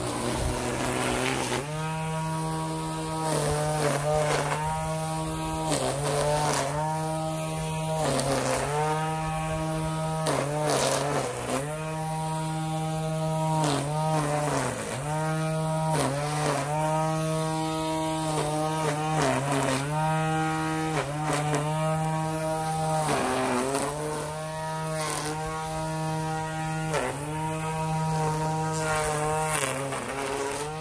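Battery-powered string trimmer running: a steady electric motor whine whose pitch dips briefly and comes back up every second or two.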